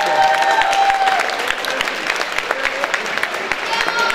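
Audience applauding, many hands clapping steadily.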